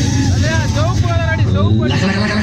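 Loud sound from a stage loudspeaker system: a voice in short rising-and-falling pitch sweeps over a steady deep bass rumble.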